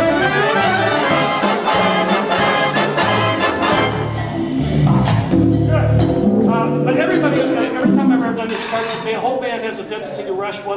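Jazz big band playing a passage together: saxophone section with trumpets and trombones, loud and full, with low held notes in the middle. The director says the band pushed this passage ahead of the beat.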